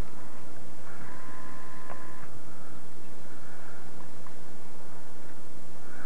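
Steady hiss and low hum of an old tape recording, with no distinct sound event; a faint two-note tone sounds for about a second, starting about a second in.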